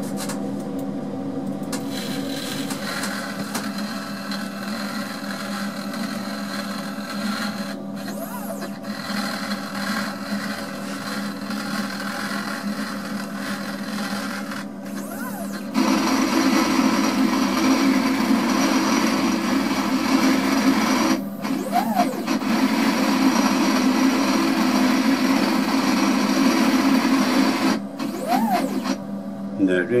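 CNC router's stepper motors driving the axes through an automatic centre-finding probe cycle: a steady whine of several tones that gets louder about halfway through and breaks off briefly a few times. There are short rising-and-falling pitch sweeps about two-thirds of the way in and again near the end, as the axis speeds up and slows down on a quicker move.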